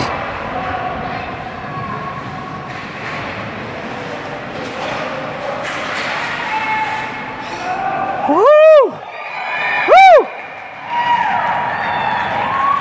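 Rink crowd noise, then two loud, high-pitched wordless shouts from a spectator near the microphone, about eight and a half and ten seconds in, each rising then falling in pitch.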